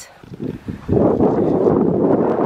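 Wind buffeting the microphone outdoors, a low rumbling rush that gets much louder about a second in.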